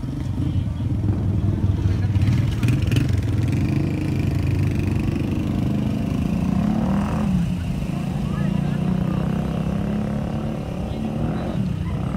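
An engine running steadily close by, a loud low hum that wavers a little in pitch.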